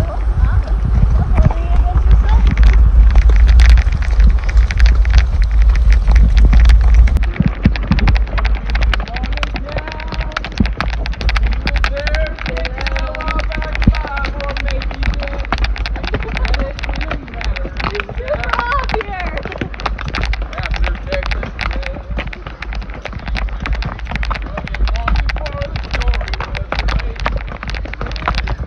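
Wind rumbling on the microphone, heaviest for the first seven seconds, over a steady run of small clicks and knocks from horses walking with their tack on a trail, with faint indistinct voices in the middle.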